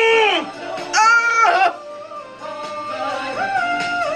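A female singer's live soul vocal: a held note slides down in pitch just after the start, a second high note is held for about half a second from about a second in, then she sings more softly to the end.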